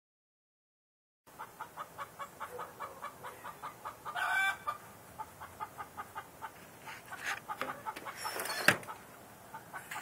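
A chicken clucking in a quick, steady run of short notes, about five a second, with a louder drawn-out call about four seconds in. A single sharp click near the end is the loudest sound.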